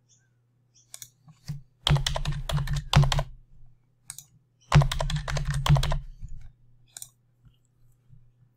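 Typing on a computer keyboard in two quick bursts, the first about two seconds in and the second near five seconds, with a few single clicks between them, over a faint steady low hum.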